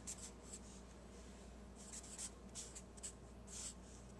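Felt-tip marker writing on paper: faint, short scratchy strokes, most of them in the second half.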